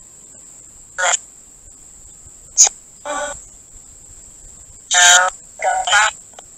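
Spirit box app on a phone sweeping through radio stations: short, chopped fragments of voices about a second or two apart, with a sharp click in between, over low hiss and a steady high-pitched tone.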